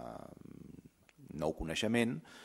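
A man speaking Spanish at a panel microphone: his voice trails off into a low, creaky hesitation sound for about the first second, then he goes on talking.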